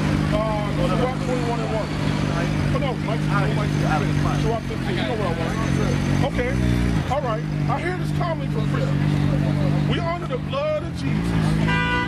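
People talking, their voices not close to the microphone, over the steady low hum of a road vehicle's engine. The hum drops in pitch and comes back up about six seconds in and again near the end.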